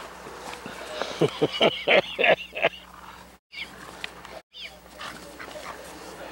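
Dogs playing tug-of-war over a toy, with a quick run of about seven short barks or yips starting about a second in. The sound drops out completely twice, briefly, near the middle.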